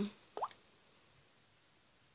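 The tail of a spoken "um", then one short rising pop about half a second in, then near silence: quiet room tone.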